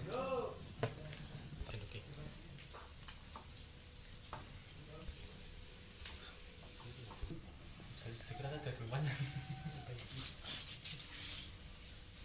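Quiet cooking sounds from a metal pan of fish simmering in broth on a stove: soft stirring and handling with a few light knocks against the pan.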